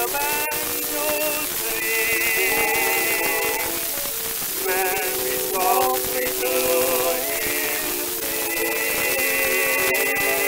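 Music played back from a 1920 Columbia 78 rpm shellac record of a tenor duet with orchestra accompaniment: held notes, the high ones with strong vibrato, over steady lower notes. A constant surface hiss runs underneath, with a sharp click about half a second in.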